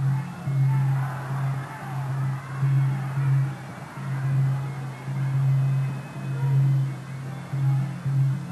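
Traditional ringside fight music: a wavering wind melody over a low beat that pulses about once a second.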